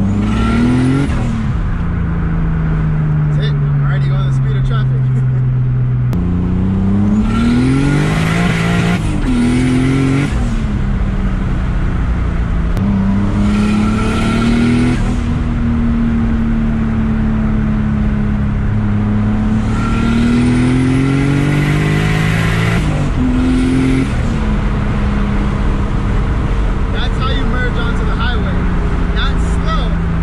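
Turbocharged BMW M52 inline-six in an E30, heard from inside the cabin as the car accelerates through the gears. The engine note climbs with each pull and drops at each upshift, several times over, then settles into a steady cruise near the end.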